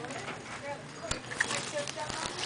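Shop background: faint voices and a few light knocks, the clearest about a second in.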